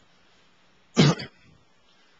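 A single short cough or throat-clearing from a person, about a second in.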